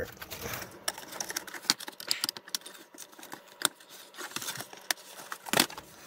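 Plastic spudger prying a toy game board off its plastic welded rivets: a run of scraping with irregular small cracks and clicks as the rivet plastic breaks and the cardboard around it tears, with two sharper snaps about three and a half and five and a half seconds in.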